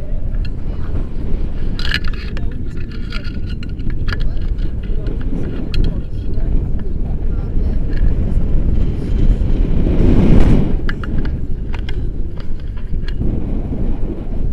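Wind rushing over the camera's microphone during a tandem paragliding flight, a loud low rumble that swells about ten seconds in.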